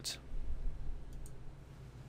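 A few faint computer mouse clicks a little over a second in, over a low steady hum.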